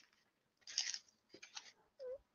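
Faint handling sounds from an action figure being pushed into a molded paper-pulp packaging insert: a brief soft rustle, then a few small clicks.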